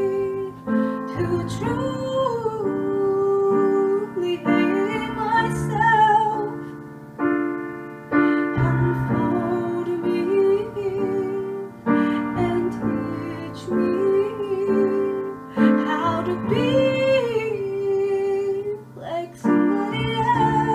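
A woman singing in phrases with wavering held notes, accompanied by chords on a digital piano.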